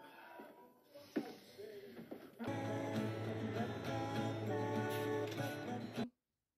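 Background music that comes in about two and a half seconds in and stops abruptly at the end. Before it there are only faint, indistinct sounds.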